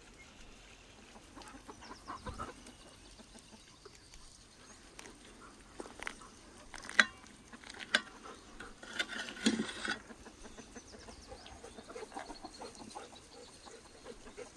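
Chickens clucking while a knife slices through a roasted chestnut-stuffed beef heart on a plate. There are a few sharp clicks through the middle, loudest about seven seconds in.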